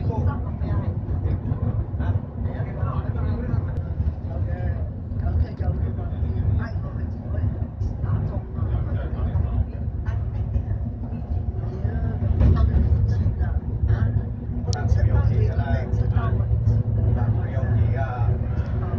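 Steady low engine and road rumble inside a bus cruising on a highway, with indistinct passenger chatter throughout.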